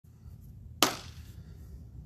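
A single sharp hand clap about a second in, dying away quickly, over a faint low hum.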